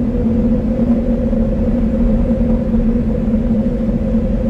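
A loud, steady low rumble with a deep hum, played over the hall's sound system as part of the show's soundtrack, with no melody in it.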